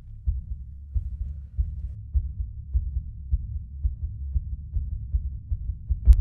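Low heartbeat sound effect in a horror soundtrack, a steady double-thump pulse at about two beats a second that quickens slightly as it goes.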